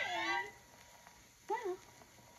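A woman's voice in a dramatic reading: a drawn-out cry that slides down in pitch and fades, a short pause, then a brief gliding 'oh' about one and a half seconds in.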